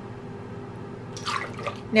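Almond milk pouring from a carton into a stainless steel measuring cup: a soft, steady trickle of liquid.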